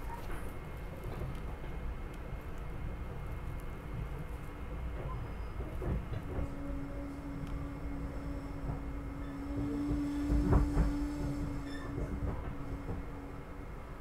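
SEPTA Regional Rail electric commuter train heard from inside the passenger car while running, a steady rumble of wheels on track. About six seconds in a steady hum joins it, and a cluster of louder knocks comes around ten to eleven seconds in.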